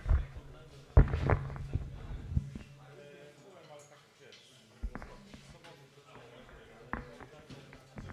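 Thumps and knocks from a microphone being handled during a sound check, the loudest about a second in, over a steady low hum and faint talk in the room.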